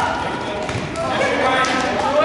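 Voices calling out in a gymnasium, with a futsal ball being kicked and bouncing on the hard court floor.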